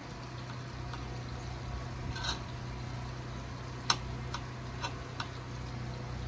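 Knife chopping onion on a cutting board: a few sharp, irregular taps, mostly in the second half, over a steady low hum.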